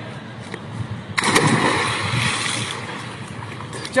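A person diving headfirst into a swimming pool: a sudden splash about a second in, then churning water that slowly dies away.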